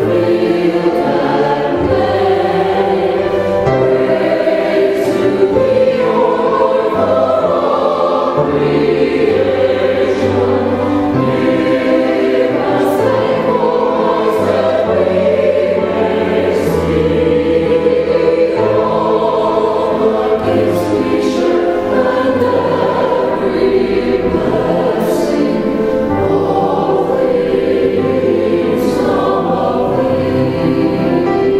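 A choir singing a slow hymn in sustained, shifting chords.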